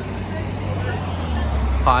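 Low, steady rumble of road traffic, growing stronger a little over a second in.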